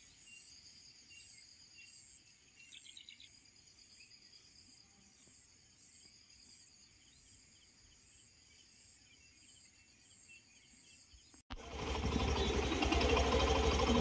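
Faint, steady insect chirring in the manner of crickets, high-pitched, with a brief chirp about three seconds in. About eleven and a half seconds in it cuts off suddenly to a much louder rush of noise with a low hum.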